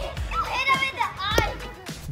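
Children playing: a child's high-pitched voice calling out over background music.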